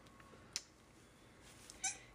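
A baby goat gives a brief, high-pitched bleat near the end. A single sharp click comes about a quarter of the way in.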